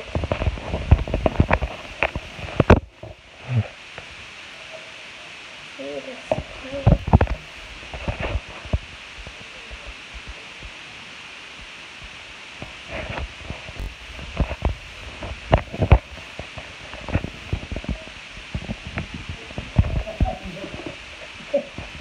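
Slime being worked in a clear plastic container: scattered wet clicks and pops with soft low thumps, over a steady hiss.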